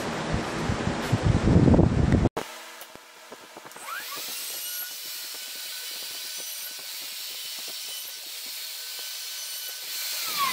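Porter-Cable plunge router motor spinning up with a rising whine a few seconds in, then running steadily at speed while holes are plunged through the corners of the melamine template. The first couple of seconds hold a louder, rougher noise that cuts off abruptly.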